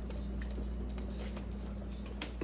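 Steady low hum with a few faint light clicks and taps.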